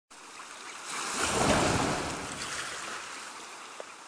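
Ocean surf sound effect: a wave washes in, swelling about a second in and then slowly receding.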